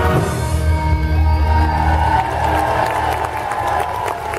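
A military brass band and a large choir hold the final chord of a song, which fades out over a few seconds as audience applause and cheering rise.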